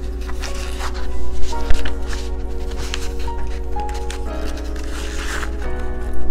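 Background music of held, slowly changing chords, with the rustle and light knocks of sheet music being slid into a string-style choir folder, the loudest two knocks about a second and a half in.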